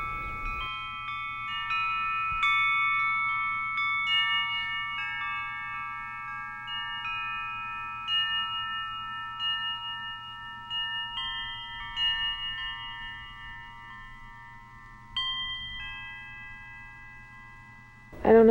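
Metal chimes struck at uneven moments, their clear tones ringing and overlapping as they slowly fade. A last strike comes about fifteen seconds in.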